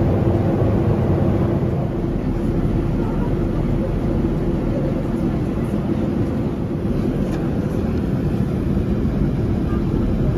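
Airliner cabin noise in flight: the steady low rush of the engines and airflow, with a faint steady hum under it.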